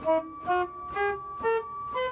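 Pipe organ pipes sounding short notes one after another, about two a second, each a step higher than the last, as the valves under them are opened by hand. Beneath them one pipe holds a steady high note on its own: a cipher, a pipe whose valve does not close, which the organist puts down to dirt or something sticking under the valve.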